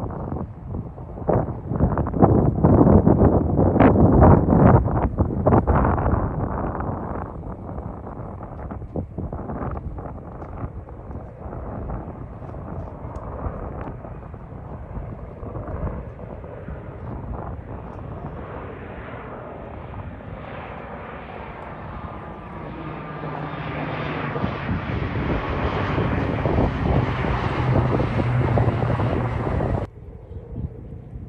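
Fixed-wing firefighting air tanker flying over, its engines a steady drone that grows louder over the last several seconds. Gusts of wind noise on the microphone in the first few seconds.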